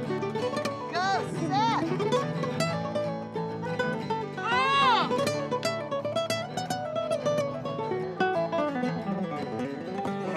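Acoustic guitar strummed while a man sings. Three sweeping rises and falls of the voice come about a second in, again shortly after, and near the middle.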